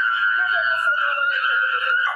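A person's long, high-pitched scream held at a steady pitch, as if in anguish.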